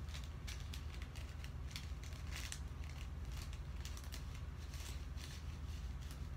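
A small paper packet rustling and crinkling in the hands, a run of irregular small crackles, over a steady low hum.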